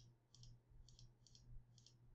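Four faint computer mouse clicks, each a quick press-and-release, about half a second apart, as keys are clicked on an on-screen calculator, over a faint low hum.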